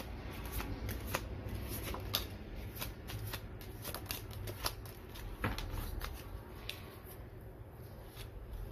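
A deck of tarot cards being handled by hand, shuffled and laid out on a table, with irregular crisp flicks and snaps of card stock, a few each second.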